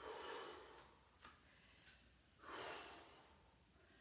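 A woman breathing hard while exercising with a dumbbell: two strong, noisy exhalations about two and a half seconds apart, with a few faint clicks between them.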